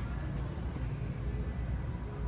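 Steady low hum and rumble of store background noise, with no distinct event.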